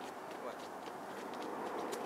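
Steady outdoor hiss with faint, irregular clicks of shoes on a concrete sidewalk as two people walk.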